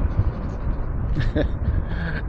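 Wind rushing over the microphone and road rumble from an e-bike moving at speed, with a man's short laugh near the end.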